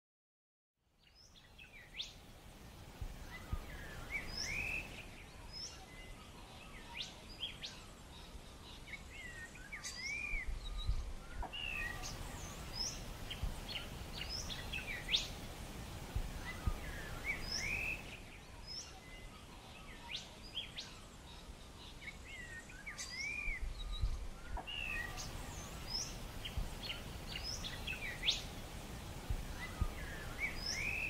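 Outdoor ambience of several birds calling: short high chirps and arched whistled notes repeating every second or two, over a low steady rumble. It fades in about a second in.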